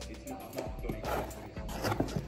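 A cardboard shipping box's tear strip being ripped along the lid in short rasping pulls. Background music plays under it.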